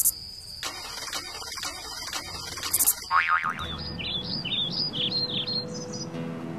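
A bird calling repeatedly with short high chirps through the second half. Before that comes a run of clicks over a steady high tone, then a short springy twang just after the middle.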